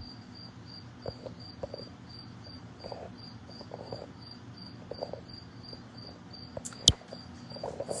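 A cricket chirping steadily, high-pitched, about two to three chirps a second. There are a few faint knocks, and one sharp click near the end.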